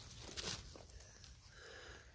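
Faint rustling of dry leaf litter and twigs as a young porcini is lifted out of the forest floor by hand, with one brief, slightly louder rustle about half a second in.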